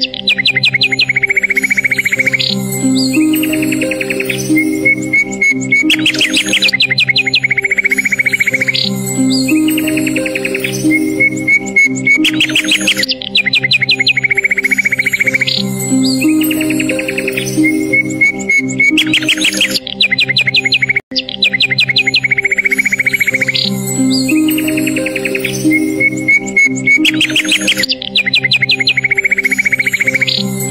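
Relaxing background music of slow, sustained chords mixed with recorded birdsong, chirps and rapid trills that repeat as an identical loop about every six and a half seconds. The sound cuts out for an instant about two-thirds of the way through.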